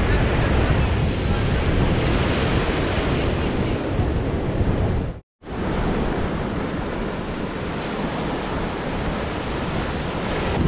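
Small waves breaking and washing up on a sandy beach, with wind buffeting the microphone as a steady rumble. The sound cuts out for a moment about halfway through.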